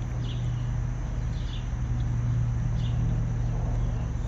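A steady low hum runs throughout, with a few faint, short, high chirps scattered through it.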